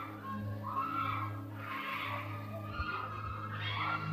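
Soft background music in a hall, with distant shouting and crying from worshippers being prayed over, over a steady low hum.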